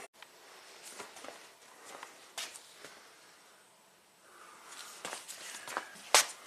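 A few faint, scattered clicks and scuffs over quiet room tone, dropping to near silence around four seconds in.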